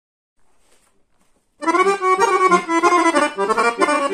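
Chromatic button accordion. A little faint handling noise comes first, then the accordion starts playing loudly about one and a half seconds in: a busy, fast-changing melody over regular bass notes and chords.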